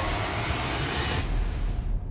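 A steady rushing noise whose high hiss drops away a little over a second in, leaving a lower rumble.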